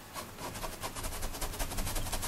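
Paintbrush scrubbing and mixing oil-style paint, a rapid scratchy rasp of many quick strokes close together.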